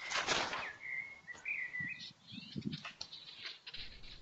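A bird chirping faintly: one wavering whistled call of about a second, after a brief rustle at the start.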